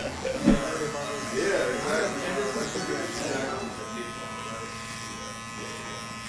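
Electric hair clippers buzzing steadily as they are run over a short buzzcut.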